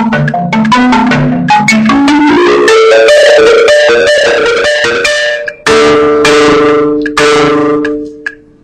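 Marimba played with mallets at a fast tempo of 150 beats per minute: quick repeated strikes on low notes, a rising run about two seconds in, then rolled chords. In the second half come two long sustained rolls, the first cut off abruptly, the second dying away at the end.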